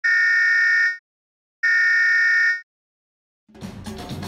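Electronic warning buzzer sounding twice, two long steady high-pitched beeps just under a second each. Music with drums comes in near the end.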